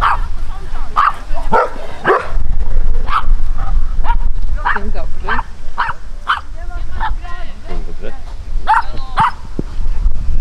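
A dog barking repeatedly in short yelps, roughly once a second with some gaps, over low wind rumble on the microphone.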